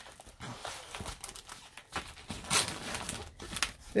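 A rolled diamond-painting canvas being handled and unrolled, its paper backing and plastic film rustling and crinkling unevenly.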